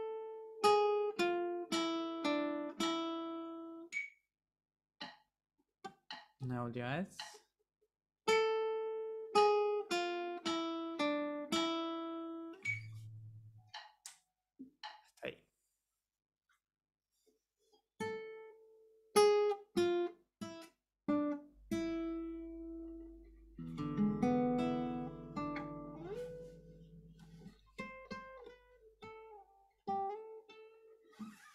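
Acoustic guitar playing a short melody one plucked note at a time, repeated several times with pauses between. It is a melodic dictation in the harmonic minor scale.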